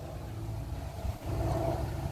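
Steady low engine rumble of a sugarcane loader working some way off, a little louder in the second half.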